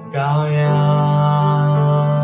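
A man singing a long held note in a Chinese worship song over sustained instrumental chords; the note comes in just after the start and is held steady.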